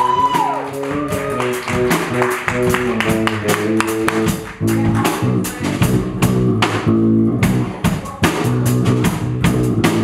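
Live band playing an instrumental groove: a moving electric bass line of stepping low notes over steady drum strokes, with electric guitar.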